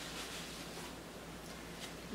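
Faint rustling of fabric as a thin shirt is drawn out of a cloth dust bag by hand.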